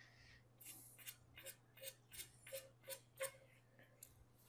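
Near silence with a faint, quick series of short, sharp clicks, about three a second, over a low steady hum.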